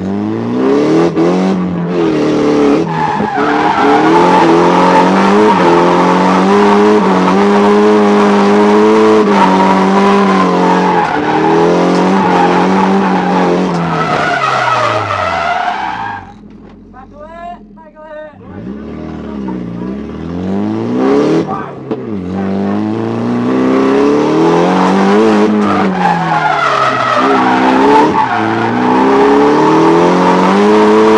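Nissan Silvia S14's SR20 four-cylinder engine heard from inside the cabin, revving hard with the revs climbing and falling over and over through a drift, with tyres skidding. About sixteen seconds in the engine drops away for a couple of seconds before it picks up and revs again.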